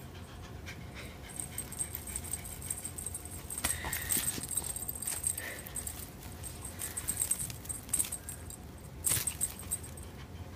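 A cat panting with its mouth open after play, with intermittent light metallic jingling from a feather wand toy.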